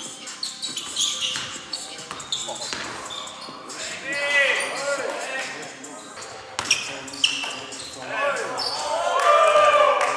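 Pickup basketball on a hardwood gym floor: a basketball bouncing and sneakers squeaking in short bursts, with players calling out, all echoing in a large hall. The voices are loudest near the end.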